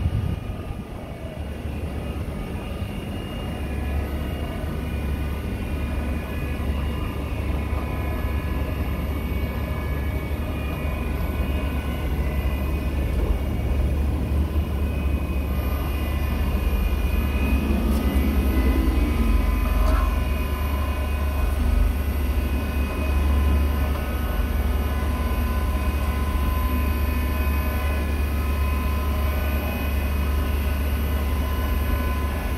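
Electric motor of a key-cutting machine running with a steady low hum and a thin whine.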